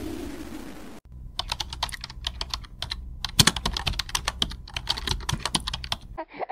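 The fading tail of a falling whoosh sound effect, then, about a second in, rapid irregular clicks of computer-keyboard typing played as a sound effect.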